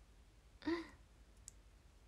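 A young woman's brief, breathy soft laugh a little over half a second in, then a single faint click.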